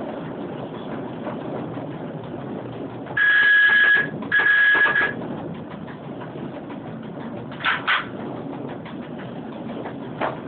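EN57 electric multiple unit running along the track, a steady rumble heard from the driver's cab, with two long blasts of its high-pitched warning horn about three and four and a half seconds in. Two short chirps follow near the end.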